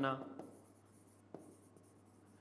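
A pen writing on an interactive display, heard as a few faint, light taps and clicks over an otherwise quiet stretch.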